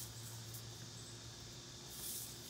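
Faint, steady outdoor background: an even high hiss over a low steady hum, with no distinct events.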